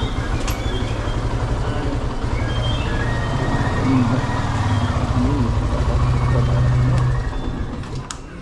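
Motorcycle engine running at low speed with a steady low pulsing, which stops near the end as the engine is shut off.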